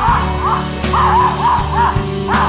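A dog yipping, a quick run of about five short, arched yips, over background music.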